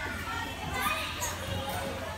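Background chatter of children's voices, no clear words, with no single sound standing out.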